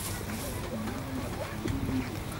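Faint voices of people talking some distance away, in short broken snatches over a low, steady outdoor background.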